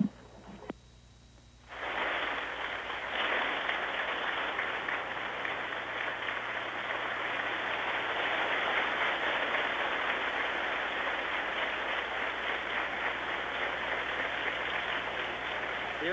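A large audience clapping, beginning suddenly about two seconds in and going on steadily.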